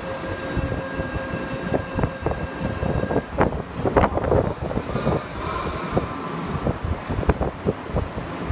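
Tokyu 8590 series electric train standing at a subway platform, with a steady hum of several tones that stops about three seconds in. Scattered knocks and clatter run over a low rumble.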